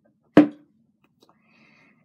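A single sharp knock a little under half a second in, as a plastic bottle of nail polish remover is set down on the table, followed by faint small handling sounds.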